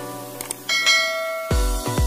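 Two quick clicks, then a single notification-bell chime that rings for under a second. About halfway through, electronic music with a heavy, regular bass beat comes in.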